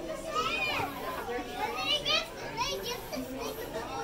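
Young children talking and calling out in high voices that swoop sharply up and down in pitch.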